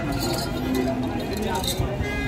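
Background voices with a light clinking, a few brief metallic or glassy clinks among them.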